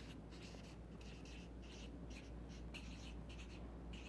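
Felt-tip marker writing on flip-chart paper: a quick run of short, faint strokes as a word is written out.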